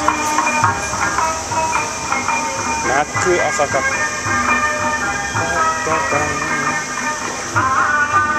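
Bon odori festival music with a wavering singing voice, most clearly about three seconds in, over held steady tones.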